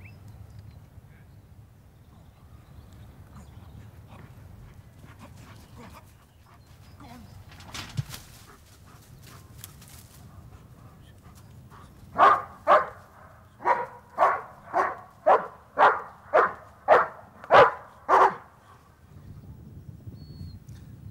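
German Shepherd police dog barking in a steady series, about eleven barks at roughly two a second, starting some twelve seconds in. This is its trained indication to the handler that it has located the hidden person.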